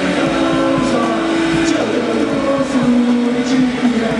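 Live rock band playing an instrumental passage on electric guitars, bass and drum kit, with held guitar notes ringing under several cymbal and drum hits.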